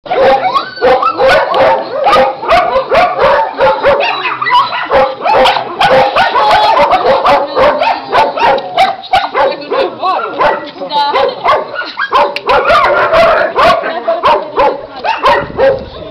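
Dogs barking in a rapid, dense run of barks, several a second, with barks of different pitches overlapping.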